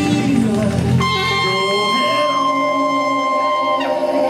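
Live band with saxophone and trumpet playing. About a second in, a long high note is held for nearly three seconds while the low bass drops away.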